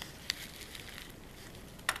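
Faint crackling of a plastic anti-static bag handled between the fingers, with a few small clicks, the sharpest near the end.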